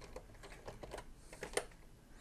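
Faint computer keyboard keystrokes: a few irregular key clicks, one a little louder about one and a half seconds in.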